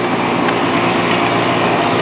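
Small motor-scooter engine running steadily under throttle.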